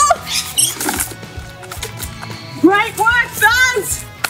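Background music with two spells of high-pitched squealing over it: a short one at the very start and a longer, wavering one about three seconds in.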